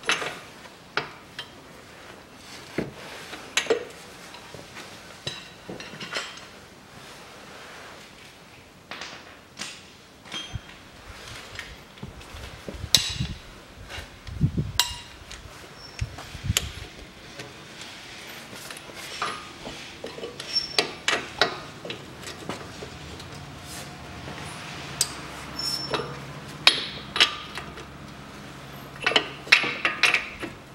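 Steel hand tools, a ratchet and a spanner, clinking and knocking on the bolts that hold a front strut to the steering knuckle as they are undone: irregular sharp metallic clinks and taps, with a few duller thuds around the middle.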